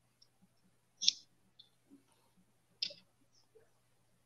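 Two short, sharp clicks, one about a second in and one just before three seconds, over a very faint steady low hum.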